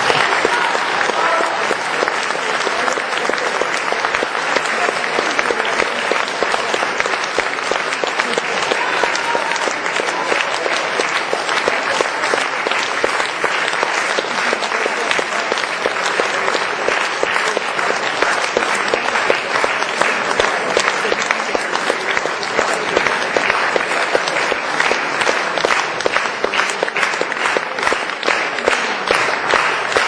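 Audience applauding: dense, steady clapping that breaks out right as the accordion music ends.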